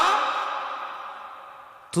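Reverberant tail of a man's amplified voice fading away steadily over about two seconds in a pause between phrases. His speech starts again right at the end.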